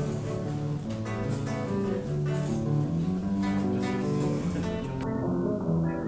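Classical-style acoustic guitar strummed and picked in a steady rhythm, playing the instrumental introduction to a song.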